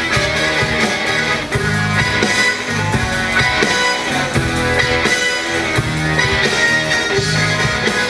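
Live rock band playing an instrumental passage without vocals: electric guitars over bass, drums and keyboard.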